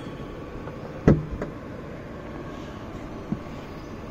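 BMW i4 tailgate being opened: the latch releases with a single clunk about a second in, followed by a few lighter clicks as the hatch lifts.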